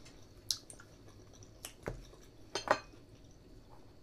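A handful of light clicks and taps of forks against plastic bento trays while eating, the sharpest pair a little under three seconds in.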